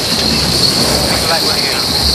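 Luna Rossa's AC75 foiling monohull sailing at about 43 knots: a steady high-pitched whine over a constant rush of wind and water, with faint voices underneath.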